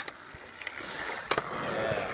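Skateboard wheels rolling on concrete, the rolling noise building and loudest near the end, with one sharp clack of the board about a second and a half in.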